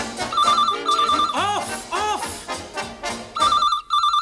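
Telephone ringing in the British double-ring pattern, two short warbling bursts and then a pause, over dance-band music. The music cuts off near the end while the phone rings again.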